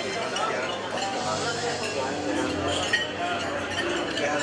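Indistinct chatter of dinner guests, with forks and knives clinking on plates and glasses throughout and one sharper clink about three seconds in.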